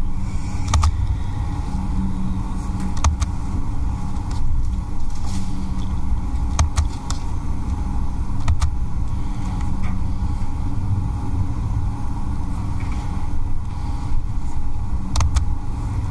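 Steady low rumble of room or microphone noise, with a few sharp clicks scattered through it.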